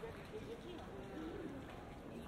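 Street ambience of a busy pedestrian shopping street: passers-by talking and walking, with a bird cooing.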